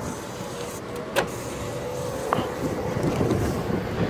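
Forklift running as it is driven and steered, a steady motor whine under the noise of the drive, with two sharp clicks, one about a second in and one a little after two seconds.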